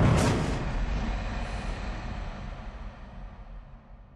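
Cinematic logo-reveal sound effect: a quick whoosh just after the start, over a deep rumble that slowly fades away.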